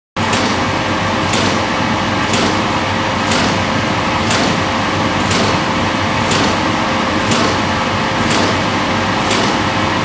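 Vibration shaker table running a shock test on a marine instrument pod at around 10 g: a loud, steady machine noise with a faint hum, and a sharp knock about once a second as each shock pulse hits.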